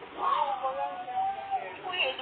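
One long, high, drawn-out vocal call lasting about a second and a half, wavering slightly in pitch.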